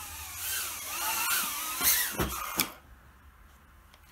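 Whine of a BetaFPV Mobula 8 tiny whoop's small brushless motors and props, wavering in pitch with the throttle. It ends with a couple of knocks a little after two seconds as the drone comes down, and then the motors stop.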